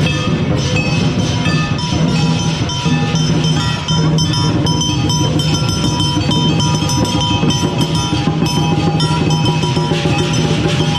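Lion dance percussion, with a drum, clashing cymbals and a gong, beating a fast, steady rhythm. The strokes come thicker about four seconds in.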